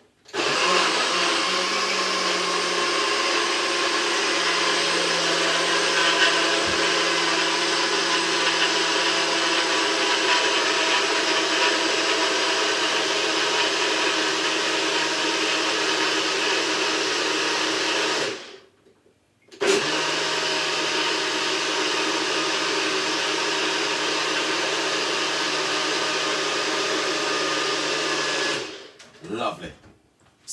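Electric blender running steadily, blending pineapple chunks and ginger with a little water into juice. It stops for about a second two-thirds of the way through, then runs again and winds down near the end.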